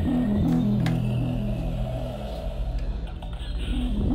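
Background music with a short, low melodic phrase that repeats.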